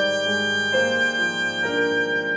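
Muted trumpet with piano playing a slow passage of contemporary classical music: a high note held steady while the lower notes change about once a second.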